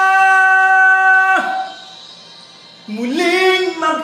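A man singing a Tagalog ballad in a high voice, holding one long steady note that breaks off about a second and a half in; after a short pause he starts the next phrase with a note that rises in pitch.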